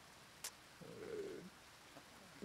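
Mostly near silence, with a soft click about half a second in, then a faint low coo lasting well under a second.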